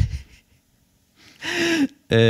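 A person's breath close into a microphone. There is a short sharp breath at the start, then a longer audible gasping in-breath in the second half, just before speech.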